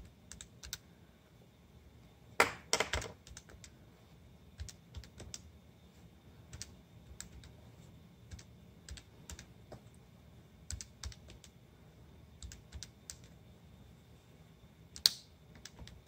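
Plastic keys of a Texas Instruments TI-30X IIS scientific calculator being pressed by hand: quick, irregular clicks, with a few louder taps about two and a half seconds in and near the end.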